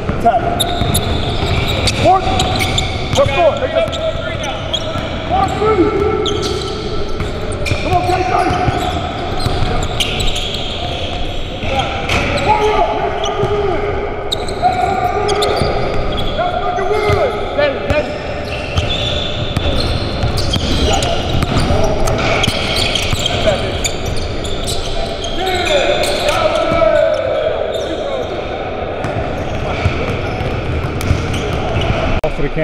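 Basketballs bouncing on a hardwood gym floor during a game, with a run of sharp impacts, mixed with players' voices calling out, all echoing in a large gym.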